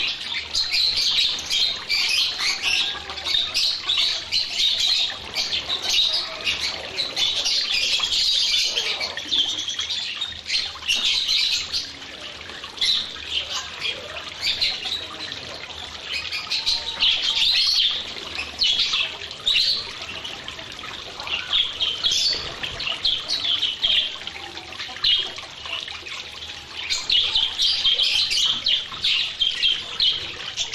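A large flock of budgerigars chattering: a dense, continuous mass of high chirps and warbles, thinning briefly around the middle and busy again near the end.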